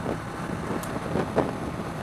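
Steady wind rush on the microphone over the engine and road noise of a 1987 Suzuki GSX-R750, an inline four, cruising at motorway speed.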